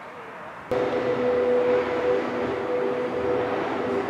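A Henry vacuum cleaner running: a steady motor hum and whine that cuts in suddenly about three quarters of a second in, after faint outdoor air.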